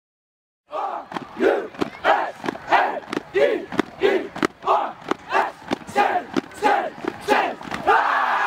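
A team of young football players shouting a rhythmic chant in unison, one shout about every two-thirds of a second, with sharp claps between the shouts. It starts abruptly just under a second in.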